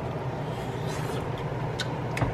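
A person chewing a hot bite of breaded chicken, with a few faint soft mouth clicks over a steady low hum.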